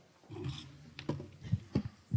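Handling noise from a lectern's gooseneck microphone as it is gripped and adjusted: a brief rustle, then a string of dull low thumps and bumps.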